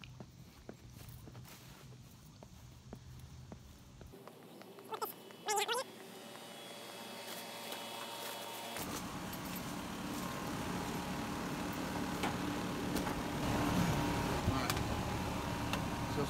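Outdoor air-conditioning condenser unit running in cooling mode, its fan and compressor noise growing steadily louder over the second half as it is approached. Two brief high squeaks about five seconds in.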